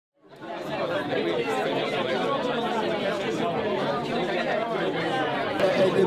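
Indistinct chatter of many people talking at once in a hall, fading in over the first half second.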